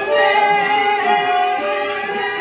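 Group of women singing a Cao Đài devotional chant together, accompanied by a stringed instrument.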